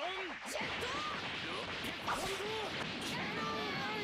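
Anime fight-scene soundtrack at low level: Japanese voice actors shouting attack names over a hiss of whoosh and impact effects.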